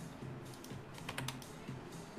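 A quick run of about five computer keyboard keystrokes, a little after a second in, over faint background music.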